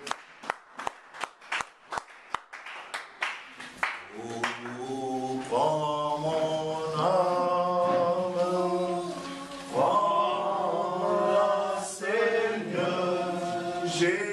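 Steady rhythmic hand clapping, about three claps a second, then a congregation begins singing a worship song together about four seconds in, the voices holding long notes.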